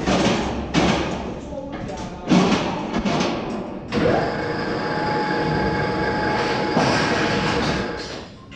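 Heavy steel hull plates clanging as they are knocked and set into place, three ringing bangs in the first half. About four seconds in, a steady harsh hiss with a faint whine takes over and runs for nearly four seconds.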